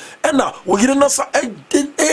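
Only speech: a man talking animatedly, with no other sound.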